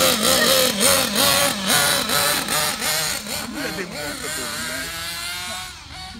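Nitro RC car engine revving up and down in quick repeated throttle blips, then holding a steadier, slowly rising pitch that fades away near the end as the car drives off.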